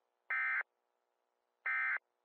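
Electronic buzzer beeps: two identical short beeps about a second and a half apart, each lasting about a third of a second, with a faint steady hum between them.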